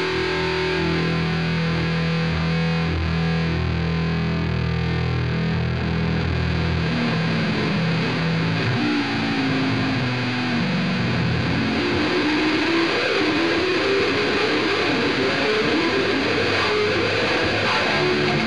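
Background music: distorted electric guitar with sustained low notes, changing to higher, busier guitar lines partway through.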